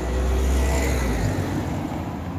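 A motor vehicle going past in the street: a low engine rumble, loudest in the first second or so, then easing off.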